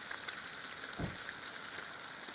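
Steady, faint crackling hiss of outdoor background noise, with one soft low thump about a second in.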